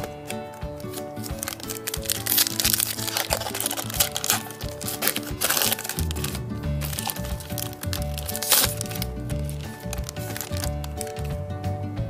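Crackling and crinkling of a Pokémon booster pack's foil wrapper as it is torn open and the cards are pulled out, loudest in the first half and once more briefly later. Background music plays throughout, with a bass line coming in about halfway.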